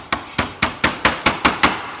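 Small hammer tapping lightly and quickly, about four to five strikes a second, on a sheet-metal patch over the wires of a metal queen excluder, folding the patch down to close a gap in the grid.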